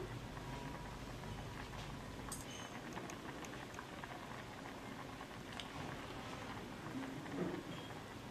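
Turmeric-spiced fish broth simmering in a clay pot at medium heat: a faint, steady bubbling with scattered small pops.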